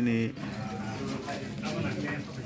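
A man's voice for a moment at the start, then a low murmur of several people talking in a gathered crowd.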